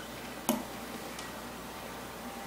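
A single sharp click about half a second in, then a much fainter tick a little later, from handling a titanium-handled folding knife.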